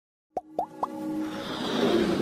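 Intro sting for an animated logo: three quick pops, each rising in pitch, a quarter second apart, followed by a building swell of synthesized music.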